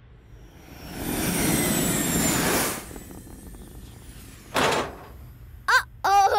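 Cartoon rocket-ship whoosh sound effect: a noisy swell with a falling high whistle, lasting about two seconds, then a shorter whoosh a little after four seconds in.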